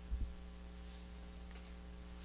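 Low, steady electrical hum in the room tone, with one soft low thump just after the start.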